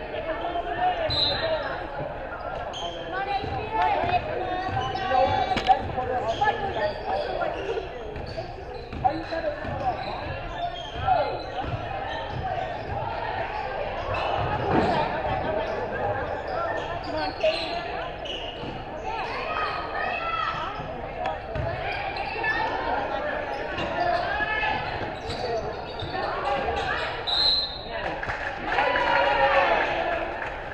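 A basketball bouncing on the gym floor during live play, with the voices of spectators and players echoing in a large gym.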